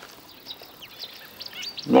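Several short, faint, high-pitched chirps from a small bird, scattered through a quiet pause.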